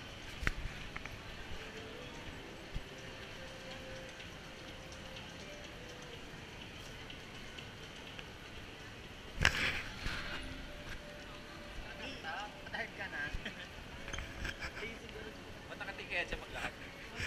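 Shopping-mall crowd ambience: indistinct chatter of many shoppers over faint background music, with one loud sudden burst of noise about nine seconds in and livelier nearby voices near the end.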